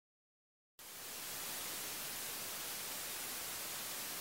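Silence, then about a second in a steady hiss starts abruptly: the background noise of a low-quality home video recording, with no music or voice yet.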